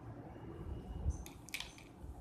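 Desk handling noises from drawing with a felt-tip marker on paper: a soft thump about a second in, then a short burst of clicks and scrapes as the marker is handled.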